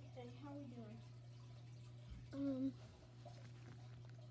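A person's voice making short wordless sounds: a falling murmur in the first second and a brief held hum a little past halfway. A steady low electrical hum runs underneath.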